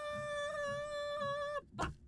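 A person's high-pitched voice holding one long, steady yell that cuts off abruptly, followed shortly after by a short knock.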